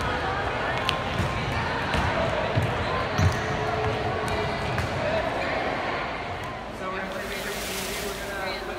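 Balls being kicked and bouncing on a wooden gym floor, several dull thuds in the first few seconds, the loudest about three seconds in, over a hubbub of children's and adults' voices echoing in the hall.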